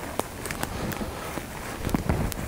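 Footsteps of a person walking through moss and blueberry undergrowth on a forest floor, with several sharp clicks among the rustle.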